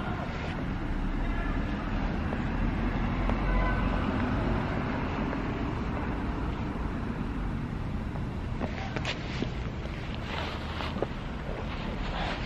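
Wind rumbling on the microphone over steady outdoor background noise. A few rustles and handling knocks come near the end.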